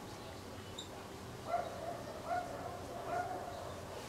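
Dry-erase marker squeaking on a whiteboard while writing: three short squeaks a little under a second apart, each rising briefly and then holding.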